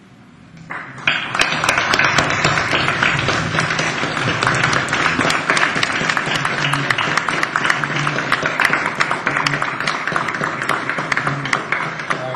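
Audience applauding, starting about a second in and keeping on at a steady level.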